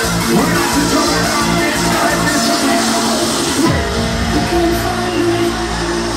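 Loud hardcore dance music from a live DJ set played over a club PA. A pulsing beat runs until about four seconds in, when the treble cuts away and a deep sustained bass takes over.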